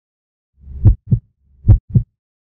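Heartbeat sound effect: two low lub-dub double thumps, starting about halfway in, the pairs a little under a second apart.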